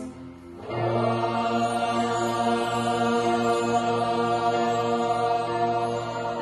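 Choir and small string orchestra holding one long sustained chord, which comes in after a short break just under a second in.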